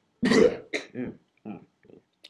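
A person laughing: one loud burst, then a few shorter, softer ones trailing off.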